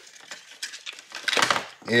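Light handling sounds of soft plastic baits and tackle being picked up and moved on a wooden tabletop: faint scattered clicks and rustles, then a louder rustle about one and a half seconds in.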